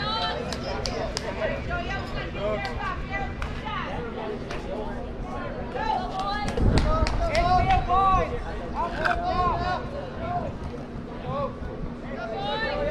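Indistinct chatter of several voices overlapping at a youth baseball field, with scattered sharp clicks. A low rumble swells a little past the middle and fades over about a second and a half.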